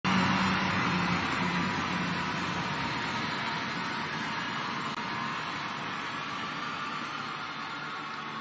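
Arena crowd noise, a steady wash of clapping and voices that fades gradually as the gymnast walks out.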